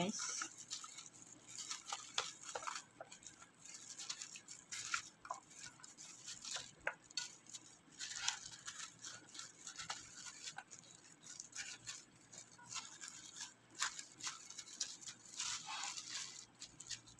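A plastic-gloved hand pushing sliced vegetables and pieces of raw fish around in a baking pan: faint, irregular crinkles of the glove, soft rustles and small clicks.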